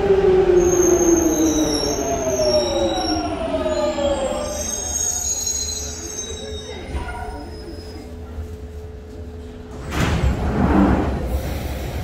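London Underground 1996 Stock Jubilee line train arriving and braking to a stop. Its traction motors whine down in pitch over the first few seconds, with high wheel and brake squeal above them. The train then stands quietly until the doors slide open near the end.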